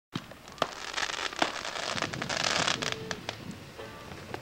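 Fireworks going off: sharp pops, the loudest about half a second and a second and a half in, among a dense crackle that thins out after about three seconds.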